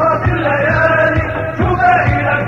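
Background music: a Middle Eastern-style song with a chanted or sung melody over low drum beats.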